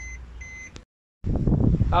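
Suzuki Ertiga's dashboard warning chime beeping repeatedly, about two short high beeps a second, over the low hum of the engine. It cuts off suddenly a little under a second in, and after a brief gap wind noise and a man's voice follow.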